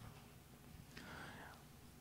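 Near silence: room tone in a pause between spoken sentences, with one faint soft sound like a breath about a second in.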